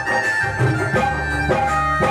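Instrumental music of a devotional bhajan: a held melody over a steady low bass, with the tabla thinning out for a moment.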